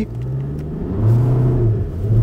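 Skoda Octavia A7 engine pulling hard from a standstill under full throttle, heard from inside the cabin. The revs rise steadily, then hold, with a brief dip near the end as the DSG gearbox, in sport mode, shifts up.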